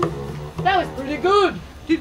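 The held last note of a sung children's song with instrumental accompaniment breaks off, followed by short, high, rising-and-falling voice sounds from the puppeteers, over a low held note that fades out.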